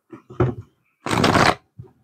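Tarot cards being handled and shuffled: a couple of soft flicks, then a half-second riffle about a second in.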